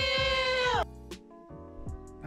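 A man's high-pitched, drawn-out yell, rising and then held, cutting off a little under a second in. Background music with a steady beat runs under it and carries on alone.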